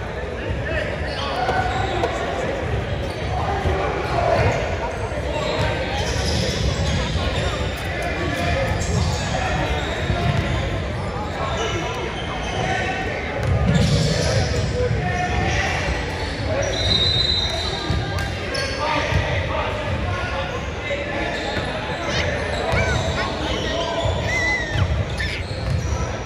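Basketball bouncing on a hardwood gym floor with repeated thuds, under the chatter of players and spectators in a large, echoing hall. A couple of brief high squeaks sound around the middle and near the end.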